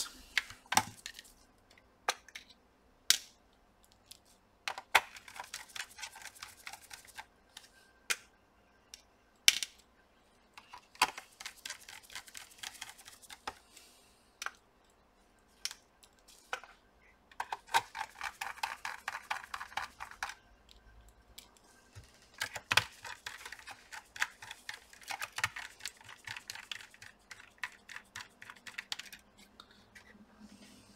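Small screws being driven back into a laptop's plastic bottom case with a precision screwdriver: runs of rapid clicking a few seconds long, with single sharp clicks between them.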